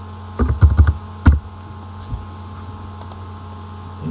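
Computer keyboard typing: a quick burst of about five keystrokes, then one harder keystroke a moment later. A couple of faint clicks follow about three seconds in.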